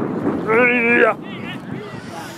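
A person shouting "yeah!" as a cheer, one call held for about half a second.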